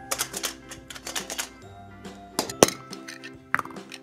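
Clicks, knocks and clinks of a hollow plastic egg being handled and pulled open, with a small die-cast toy car inside knocking against the shell; one sharp snap stands out about two and a half seconds in. Steady children's background music plays underneath.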